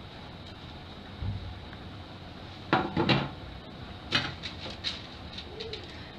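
Kitchenware being set down on a counter: a low thud, then two sharp knocks in quick succession, followed by a few lighter clicks and taps as a board and stacked aluminium foil cups are put in place.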